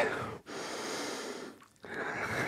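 A man's audible breath, close on a headset microphone: one breathy rush of about a second during a held yoga pose, a brief pause, then the next breath starting.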